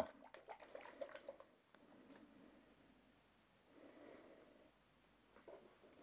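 Near silence: room tone with a few faint rustles and ticks in the first second and a half and a soft rustle about four seconds in, as an oil bottle and a piece of paper are handled.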